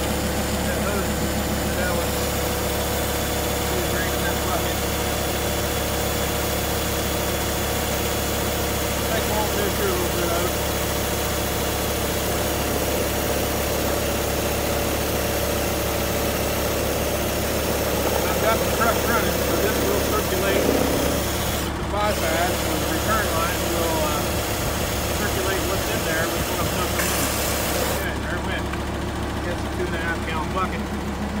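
Steady mechanical drone of a diesel truck idling while a homemade transfer pump, built from a small-block Chevrolet oil pump, pumps used engine oil mixed with fuel from a bucket through a filter into the truck.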